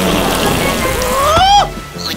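Rain falling on water, and about a second in a cartoon character's voice gliding up and then down in a drawn-out whine before cutting off.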